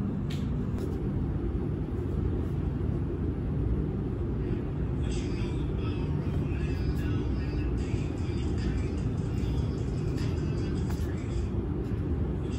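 Background music with a heavy, steady low end; brighter, higher-pitched parts come in about five seconds in.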